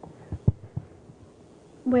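Handheld microphone handling noise as it is passed and taken in hand: a few low thumps, the loudest about half a second in. A voice begins speaking near the end.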